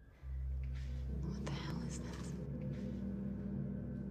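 Film score: a low, sustained drone that comes in suddenly just after the start, with whispering voices over it for the first couple of seconds.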